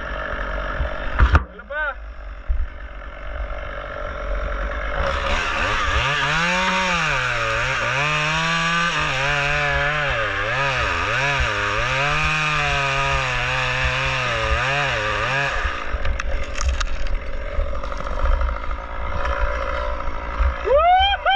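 Chainsaw cutting through a large pine trunk. About five seconds in it revs up into a loud, steady cut whose pitch wavers up and down as the chain loads and bogs in the wood. After about ten seconds it drops back to a lower hum.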